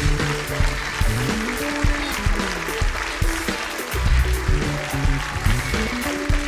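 Live house band playing an upbeat tune with bass guitar, keyboard and drums keeping a steady beat.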